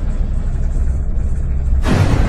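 A deep, steady cinematic rumble, with a sudden burst-like hit near the end.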